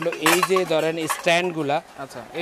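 A man talking, with light metallic clinks as stainless-steel spin-mop handles and their metal disc bases knock together while being handled.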